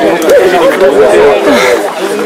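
Men's voices talking over one another at close range, loud and unbroken: overlapping speech with no words clear enough to make out.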